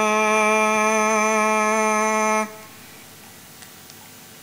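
Singers chanting a Javanese song in unison, holding one long note with a slight waver that stops sharply about two and a half seconds in.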